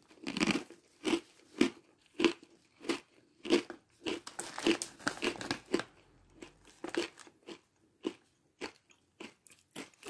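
A person chewing a mouthful of Catalina Crunch Traditional Crunch Mix (pretzels, nuts and cereal pieces), with a crisp crunch about every half second that grows fainter and sparser after about six seconds as the mouthful is chewed down.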